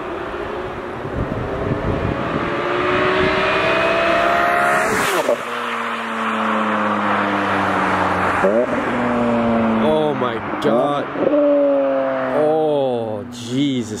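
BMW E46 M3 straight-six with a Top Speed muffler and added resonator, driven hard past in a flyby. The revs climb for about five seconds, then drop suddenly. In the second half the pitch rises and falls quickly several times, as with gear changes.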